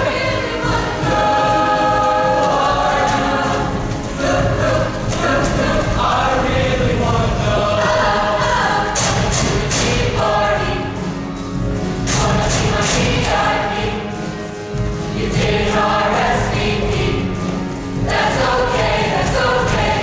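A mixed show choir singing in harmony, heard live from the audience in a reverberant hall.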